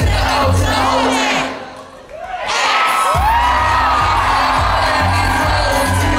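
Live pop dance track played loud over a concert hall PA with a heavy bass beat and a crowd cheering. The music drops out briefly about a second and a half in, then the beat comes back in about three seconds in with a voice sliding in pitch over it.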